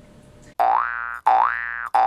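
Cartoon-style editing sound effect laid over a title card: a pitched tone that slides upward and then holds, repeated three times back to back starting about half a second in.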